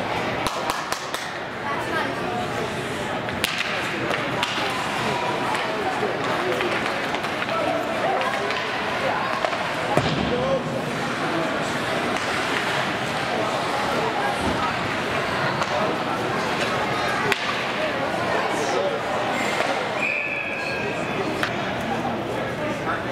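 Ice hockey rink during play: voices of players and spectators chattering throughout, with a few sharp knocks of puck or sticks against the boards. A short referee's whistle sounds near the end, stopping play.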